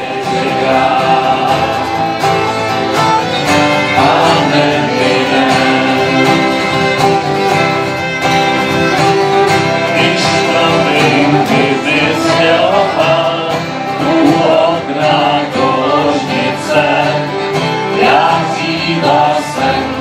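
Live acoustic folk band playing: two strummed acoustic guitars, piano accordion and fiddle, with several voices singing together.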